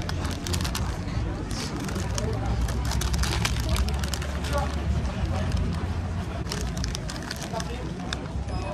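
Paper wrapper of a döner crinkling and rustling in the hands close to the microphone, many short crackles, over a steady low street rumble and faint background voices.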